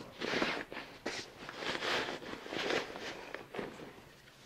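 Bed sheets rustling in a run of swishes, about one or two a second, as a clean fitted sheet is rolled and tucked along a mattress.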